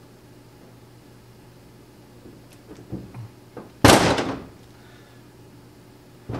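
Light clicks of metal parts being handled, then one loud clunk about four seconds in, on a steel workbench, while a trim cylinder rod is fitted with its new seals and end cap.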